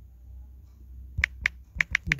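Four short sharp clicks of typing on a smartphone's on-screen keyboard, one per key press, coming in the second half.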